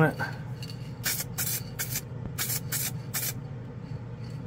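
Aerosol spray can of clear coat sprayed in about six short bursts, a second to three and a half seconds in, over the steady hum of the spray booth's exhaust fan.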